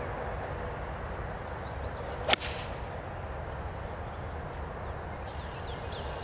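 A golf iron striking the ball on a full approach swing: a single sharp crack about two seconds in, over a steady background hiss.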